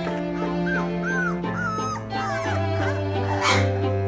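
Newborn puppies squeaking and whimpering, several short high cries that rise and fall in the first three seconds, over background music.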